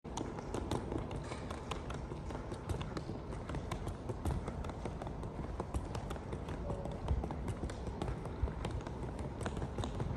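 Irregular footsteps on a hard, polished terminal floor, over a steady low background rumble of a large airport hall.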